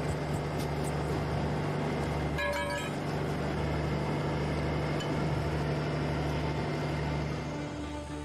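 Steady low rumble of an idling diesel truck engine, with a short ringing tone about two and a half seconds in. Music comes in near the end.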